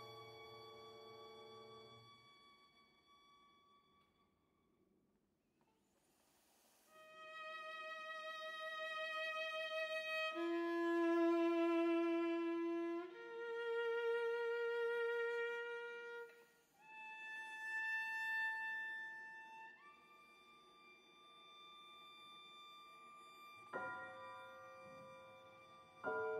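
Viola and piano in a slow chamber piece: a piano chord dies away into a brief near silence, then the viola enters alone with long held notes sung out with vibrato, moving to a new pitch every few seconds. Near the end the piano comes back in with a chord under the viola.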